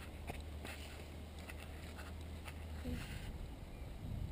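Light, regular footfalls of a runner on a dirt path, growing fainter as she moves away, over a low steady rumble that stops about three seconds in.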